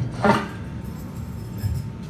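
A short vocal sound just after the start, then a pause filled by a live band's idle stage sound: a steady low amplifier hum and room noise in a small club.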